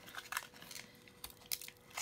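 Faint crinkling and clicking of a plastic drink bottle being handled, in a few short crackles scattered through the two seconds.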